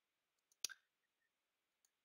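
Near silence broken by one sharp click about half a second in, a computer mouse click, followed by a fainter tick near the end.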